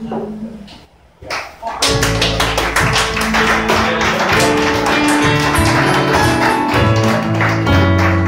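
Live band playing a song: a held note fades and the music drops almost out about a second in, then the full band comes back in just under two seconds in, with strummed acoustic guitar, bass, keyboard and quick percussive strikes.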